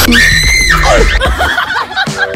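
A man's high-pitched scream, lasting under a second, followed by shorter voice sounds.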